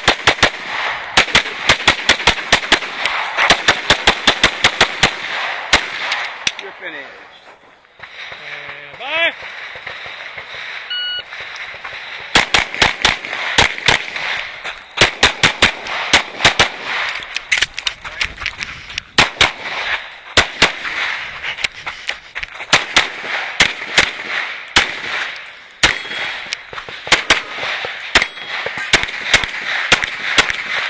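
Rapid pistol fire from a race pistol with a red-dot sight: strings of quick shots, several a second, broken by short pauses. There is a quieter lull in the middle before the strings start again.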